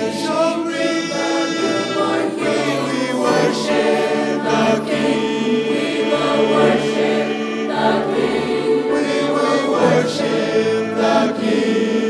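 A mixed choir singing with string orchestra accompaniment: many voices holding sustained chords over a steady, full sound.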